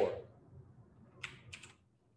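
Computer keyboard keys being typed: three quick keystrokes about a second and a quarter in.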